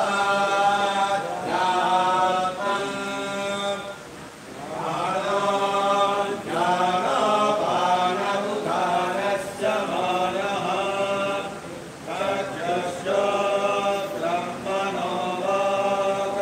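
Priests chanting a ritual hymn in unison, male voices on a steady, nearly level pitch. The chant runs in long phrases with short breaks every few seconds.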